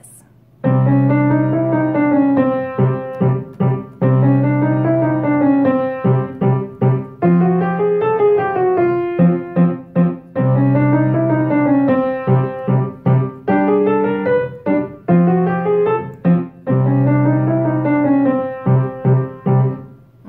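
Kawai piano playing a fast 12-bar blues, starting about half a second in. Over steady low left-hand notes, the right hand runs up and down a chromatic scale in a repeating arched figure.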